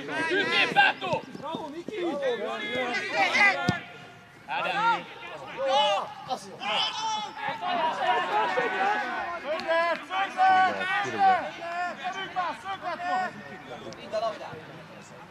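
Men's voices calling and shouting to one another across an open football pitch, with one sharp knock a little under four seconds in.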